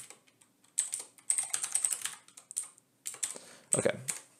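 Typing on a computer keyboard: several quick runs of key clicks separated by short pauses.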